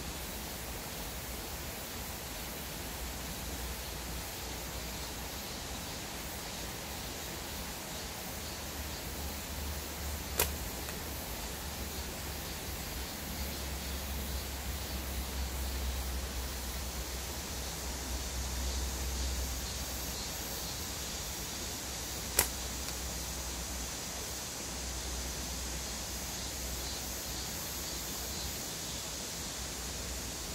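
A slingshot fired twice, about twelve seconds apart, each shot a single sharp snap as the bands and pouch are released. A steady hiss with a low rumble runs underneath.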